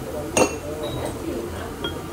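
One sharp clink of tableware, glass or crockery, about half a second in, ringing briefly. A fainter tick follows near the end.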